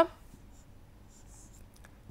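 Faint scratching of a pen writing on a board: a few short, soft strokes, with a small click near the end.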